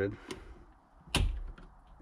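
A single sharp plastic click about a second in, loud with a short thud under it, as the barbed retaining clip on a BMW fuel pump top hat is worked with a pick; a fainter click comes just before it.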